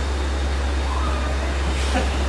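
A steady low hum or rumble, with faint voices in the background.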